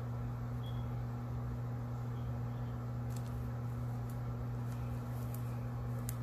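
Steady low hum in the room, with a few faint ticks from hands handling a roll of washi tape.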